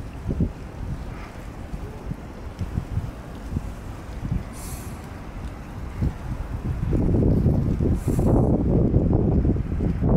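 Wind buffeting the microphone outdoors: an uneven low rumble that grows louder about seven seconds in, with two brief hisses.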